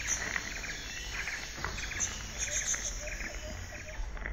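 Nature ambience of chirping insects, with a few bird chirps, running steadily under a low hum.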